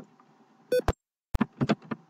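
Computer keyboard being typed on: a handful of sharp key clicks spread over the second half, just after a brief beep-like tone.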